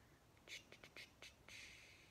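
Near silence broken by faint whispering: a few short hissy syllables about half a second in, then a longer hiss from about a second and a half in.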